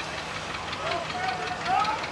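Indistinct voices talking at a distance, over a low steady hum like an idling engine.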